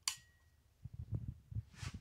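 A toggle switch on a metal switch panel clicks on, followed by a faint thin high tone lasting about half a second. Soft scattered handling knocks follow.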